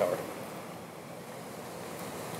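Steady outdoor rushing noise of wind and moving river water, with no distinct event in it.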